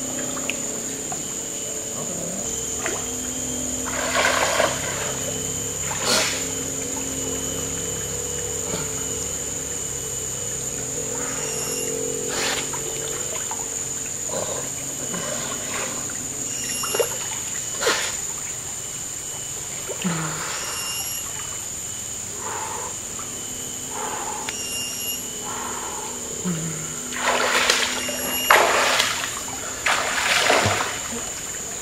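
Water splashing as swimmers move in a river pool, in short separate splashes, with the biggest splashes near the end, over background music with held tones.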